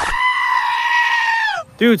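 One long, loud, high-pitched scream, held for about a second and a half before it drops in pitch and breaks off.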